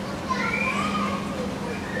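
High-pitched voices calling out in short gliding cries during the first second, over a steady low hum.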